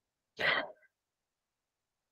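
One short vocal sound from a person, about half a second in, lasting about a third of a second.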